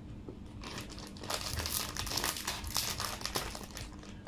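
Plastic chocolate wrappers being crinkled and torn open by hand, a rapid crackling that starts about half a second in and keeps going.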